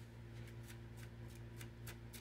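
Faint, soft clicks of a tarot deck being shuffled by hand, about three a second at slightly uneven spacing, over a steady low electrical hum.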